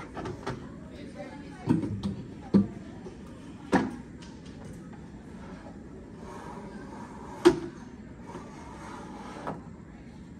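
Plastic chairs with metal legs being lifted and set upside down on tables: a series of knocks and clatters, the loudest about seven and a half seconds in.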